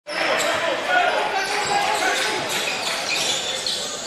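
Game sound of live basketball on a hardwood court: the ball bouncing, with players' and crowd voices echoing in the hall.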